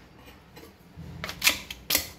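Crisp fried appalams (papads) cracking as a metal slotted spoon presses and breaks them in a steel pressure cooker: a few short, sharp crackles starting about a second in.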